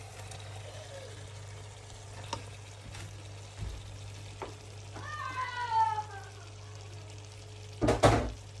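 Raw chicken pieces sizzling steadily in hot oil and masala in a wok, with a few light clicks of the spoon against the pan. About five seconds in there is a short cry that falls in pitch, and a loud knock right at the end.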